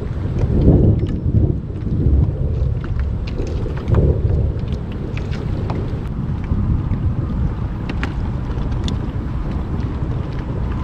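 Wind buffeting the microphone on open water in a low, uneven rumble that swells about a second in and again about four seconds in, with scattered light clicks over it.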